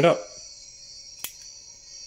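Miniature Ghostbusters PKE meter toy running, its small speaker giving a steady high-pitched electronic whine; the meter stays on with its arms opened, now that its battery contacts are clean. A single plastic click a little past halfway.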